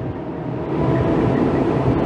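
A steady rushing noise with no speech, fairly loud, swelling slightly through the pause.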